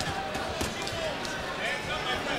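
Boxing-arena crowd murmuring, with scattered soft thuds from the ring.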